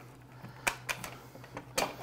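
A handheld grater being handled and set down on a kitchen countertop: three light knocks, two close together about two-thirds of a second in and the loudest near the end.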